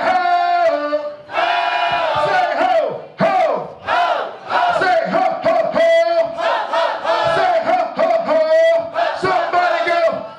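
A man's voice through a handheld microphone and PA, performing wordless vocal sounds: long held pitched notes with bends and slides, broken by short gaps.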